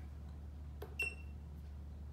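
Keypad of a Meike palm bladder scanner: a button click and one short, high electronic beep about a second in, the machine confirming an arrow-key press that steps the patient setting.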